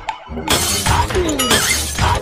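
Crash of shattering glass starting about half a second in, over background music.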